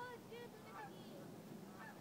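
A flock of geese honking faintly in the distance: a handful of short calls, most of them in the first second and one more near the end.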